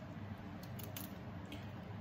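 Small kitchen knife trimming the tough bottom of a small artichoke, with a few faint, crisp cuts.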